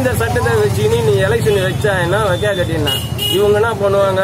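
A man talking continuously, with street traffic noise underneath.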